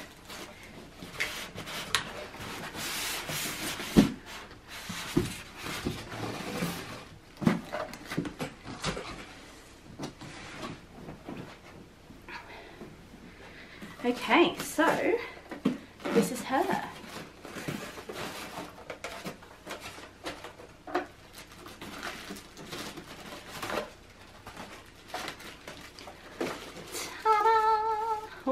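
Polystyrene foam packing blocks and plastic wrap rubbing, scraping and crinkling against a cardboard box as a sewing machine is lifted out of its packaging, with scattered knocks, the sharpest about four seconds in.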